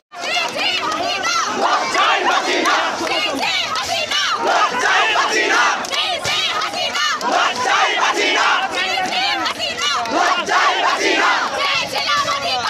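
A large protest crowd shouting slogans, many voices overlapping at a steady, loud level. The sound cuts in abruptly just after a brief silence at the very start.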